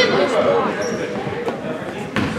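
A basketball bouncing a couple of times on a hardwood gym floor, each bounce a sharp thud, over people talking.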